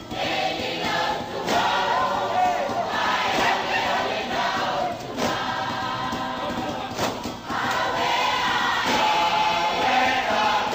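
A choir singing in harmony as music, with a few sharp percussive hits spread through it.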